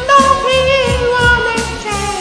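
A solo voice singing a Korean ballad over a karaoke backing track, holding one long note with vibrato. A steady drum beat runs beneath it.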